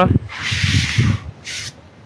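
Sneaker sole scraping across a zinc roof sheet, one longer scrape followed by a short one, showing how slippery the roof surface is.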